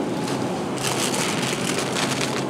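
Plastic bag of shredded lettuce crinkling as it is taken from a refrigerated shelf, in the second half. It is heard over a steady hiss of store background noise.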